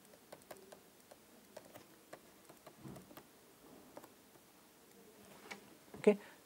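Faint, irregular clicks and taps of a stylus on a tablet writing surface as handwriting is written out, a few dozen light ticks at uneven spacing.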